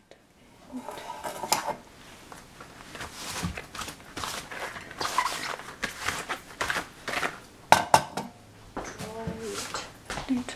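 Stainless steel teapot and its metal lid clinking and knocking on a tiled counter, with a cloth rubbing across the tiles in between. Two sharp knocks a little before eight seconds in are the loudest.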